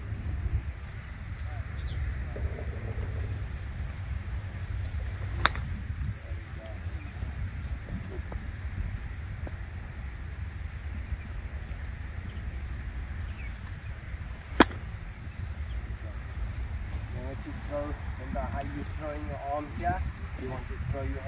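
Two sharp clicks of a golf iron striking a ball off a practice mat, about five seconds apart at first strike and nine seconds later the second, louder one, over a low steady rumble.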